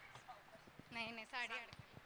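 Loud dance music cuts off abruptly, leaving a faint lull with a few light taps and a brief faint wavering voice about a second in.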